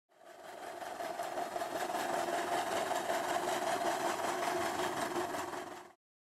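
An engine running steadily with a fast, even clatter, fading in at the start and fading out near the end.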